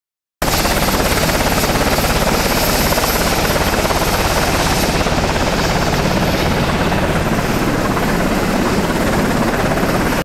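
Helicopter running close by, its rotor beating in a rapid, steady pulse under loud engine noise. The sound starts abruptly about half a second in.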